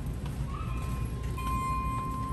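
A steady, high-pitched electronic tone comes in about half a second in and gets louder about halfway through, over a low background rumble of store noise.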